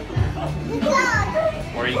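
A young child's high voice calls out briefly about a second in, with no clear words, over background music.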